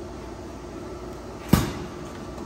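A single sharp knock about one and a half seconds in, over a steady low shop hum: a molded plastic workpiece bumping against the machine's fixture as it is loaded.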